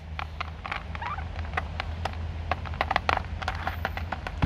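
Turkeys pecking feed from a terracotta bowl: irregular sharp clicks and taps, several a second, over a steady low hum.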